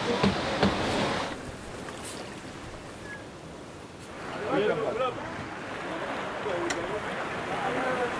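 Lake waves washing against a rocky shore, with a stronger rush in the first second, then faint voices of people talking in the background.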